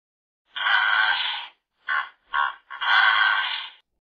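Hippopotamus calling: a long call, two short ones, then another long call.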